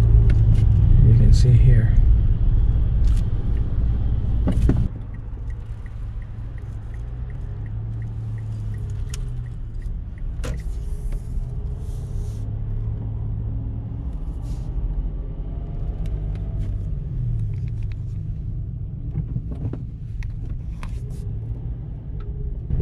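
Car engine and road rumble heard from inside the cabin while driving. It is loud for the first five seconds, then drops abruptly to a lower, steady rumble. A run of faint, regular ticks comes a few seconds after the drop.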